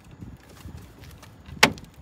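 A plastic trim tool prying at the VW badge in a van's front grille, with faint handling and scraping noise, then one sharp plastic click a little before the end. The tool is pushing the grille in rather than popping the badge out.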